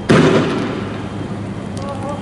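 A single sudden loud bang about a tenth of a second in, dying away over about half a second: a tear gas round fired by riot police.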